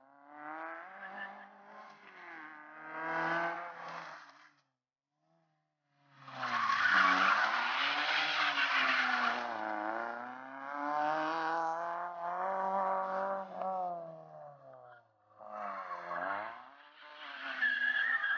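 Fiat Seicento rally car's engine revving up and down hard as the car slides through tight turns, with tyres squealing on the tarmac. The sound drops out completely for about a second and a half, about four seconds in.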